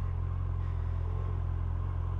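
Yamaha FJR1300's inline-four engine idling steadily, a low even rumble, while the bike waits at a stop.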